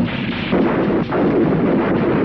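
Film sound-effect gunfire: a loud, dense volley of shots and blasts that runs without a break, with fresh bursts about half a second and about a second in.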